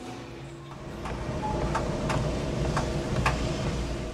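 Treadmill running with a steady motor and belt hum, getting louder about a second in. Footsteps land on the moving belt about twice a second at a walking pace.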